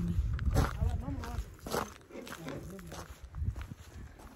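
Footsteps crunching through snow, a few irregular steps, with wind rumbling on the microphone.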